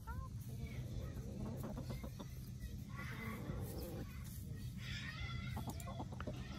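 Chickens clucking, with short calls in little bursts about three seconds and five seconds in, over a low steady rumble.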